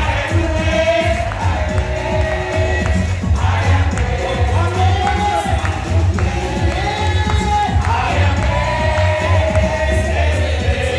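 A group of voices singing a church chorus together over instrumental accompaniment with a strong, steady bass.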